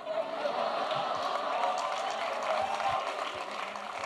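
Audience applauding after a punchline, fading toward the end.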